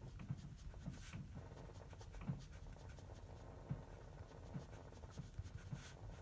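A pen writing on paper: faint, irregular scratches and light taps of the pen strokes.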